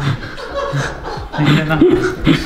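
A man laughing in short chuckles, louder in the second half.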